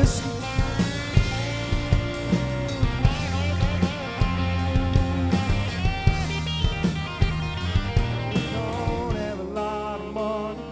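Live rock band playing an instrumental passage: electric guitars with bending lead notes over bass guitar and a drum kit. The low end drops away near the end.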